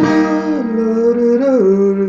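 A man singing a slow melodic phrase over a chord held on a digital keyboard's piano voice. His voice steps down in pitch about halfway through and again near the end.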